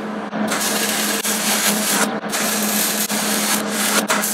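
Welding arc crackling as an engine-mount bracket is tack-welded onto a scooter frame. It comes in two runs with a short break about two seconds in, over a steady low hum.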